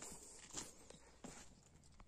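Near silence, with a couple of faint, soft footsteps on dirt.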